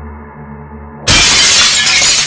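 Background music, then a sudden loud crash of a glass pane shattering about a second in, with crackling of breaking pieces after it.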